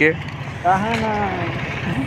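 A person's voice making one drawn-out sound of about a second, rising and then falling in pitch, over steady background noise.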